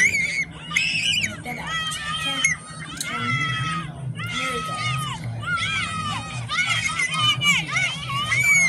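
A crowd of children screaming and shouting over one another in high, strained voices, the yelling of onlookers at a fistfight between kids.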